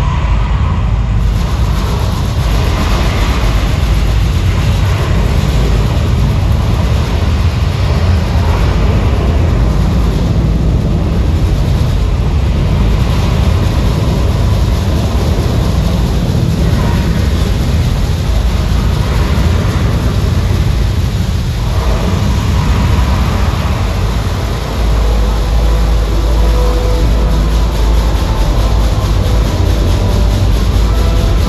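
Recorded sound of a Saturn V rocket launch played over a show's loudspeakers. It is a loud, continuous noise, heaviest in the bass, which grows deeper about 25 seconds in.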